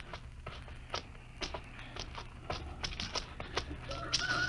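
Radio-drama footsteps sound effect: several men walking slowly and cautiously, short taps coming a few to three a second, over a low steady hum.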